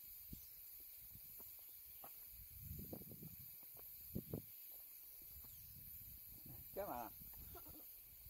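Near-quiet forest trail with a few soft knocks and rustles. About seven seconds in comes one short wavering vocal sound from a person.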